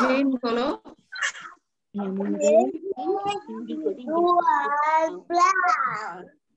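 Children's high-pitched voices talking in drawn-out, sing-song phrases, with a short pause about a second and a half in.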